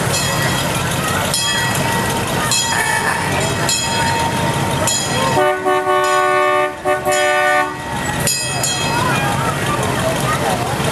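A vehicle horn sounds a chord of several notes for about two seconds in the second half, with a short break partway, over the low rumble of slow-cruising classic car engines and crowd voices.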